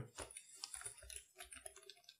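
Faint computer keyboard typing: a quick run of separate keystrokes.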